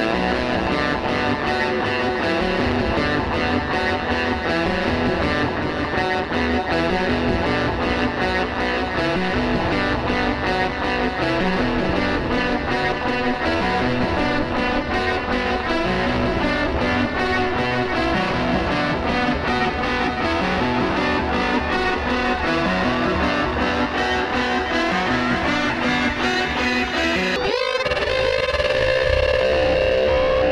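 Electric guitar played through Guitar Rig 3 effects with a ring modulator, giving a dense, pulsing, distorted texture. About 27 seconds in it breaks off briefly and gives way to a held tone with sliding pitches.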